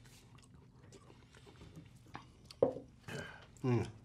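Quiet mouth sounds of a man sipping and swallowing soda from a small glass bottle, with faint clicks. Near the end come a short vocal noise and an appreciative 'mm'.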